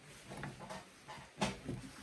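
Faint scratchy pulls of a stripping knife plucking an Airedale terrier's wiry neck coat, with a sharper click about one and a half seconds in.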